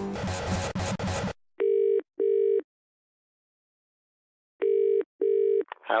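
British-style telephone ringing tone heard down the line as a call goes through: two double rings, each two short steady buzzes close together, about three seconds apart. Music cuts off about a second in, and the call is answered with a voice right at the end.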